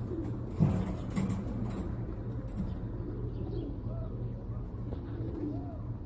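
King pigeons cooing: soft, low gliding coos over a steady low hum. There is a single sharp knock about half a second in.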